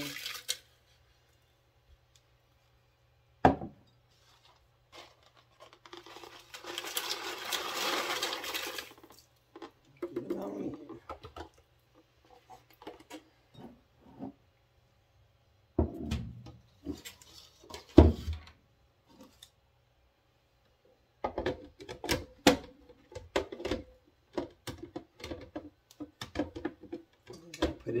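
Dried chili peppers rustling and rattling as they are tipped into a plastic food-processor bowl. Sharp plastic knocks follow as the bowl and tray are handled, then a run of quick clicks near the end as the lid is fitted into its grooves.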